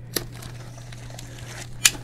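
Utility knife running along the slit packing-tape seam of a cardboard box, with faint scraping and crinkling of tape and cardboard. There is a light click just after the start and a sharper, louder click near the end.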